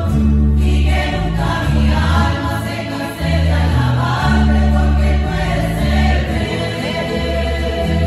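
A women's choir singing a Spanish-language hymn together, accompanied by mandolins and guitars, with a deep bass line moving note by note underneath.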